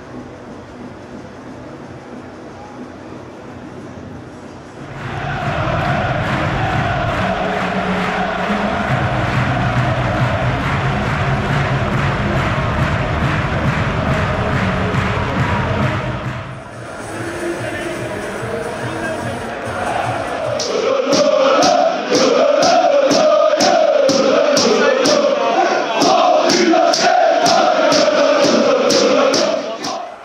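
Music for the first two-thirds, loud with a steady bass after about five seconds. From about two-thirds of the way in, a football stadium crowd is singing and chanting, with sharp rhythmic claps or beats about two to three a second.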